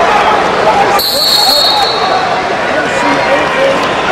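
Loud arena crowd at a wrestling match, many voices yelling and cheering at once. About a second in, a short high whistle sounds.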